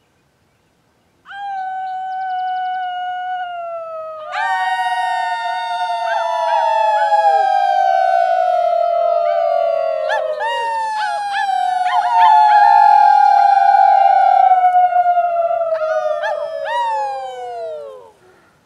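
Several voices howling together: long, slowly falling held notes that overlap, one starting about a second in and others joining a few seconds later, with short swooping calls near the middle and near the end.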